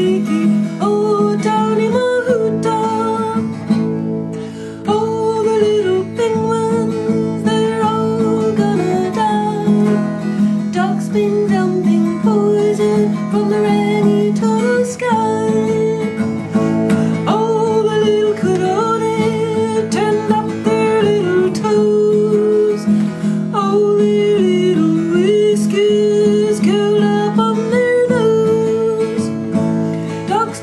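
A folk protest song: acoustic guitar strummed steadily, with a wavering melody line over it that sounds like a singing voice.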